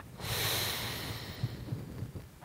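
A man's long breath, heard close on a clip-on microphone, starting just after the pause begins and fading away over about a second and a half.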